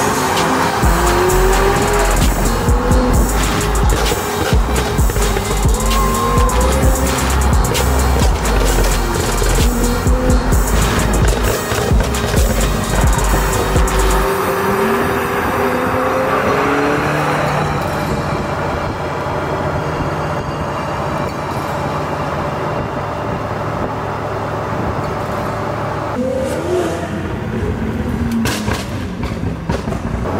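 McLaren 720S twin-turbo V8 through a Ryft titanium exhaust and downpipes, revving and pulling hard in repeated runs, its pitch rising and falling. A music track with a heavy bass beat plays underneath and drops out about halfway through.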